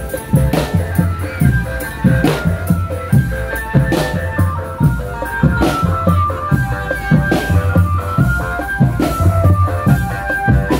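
Drum band music: drums beat a steady rhythm with a bright crash about every second and a half, under a melody of held, organ-like notes.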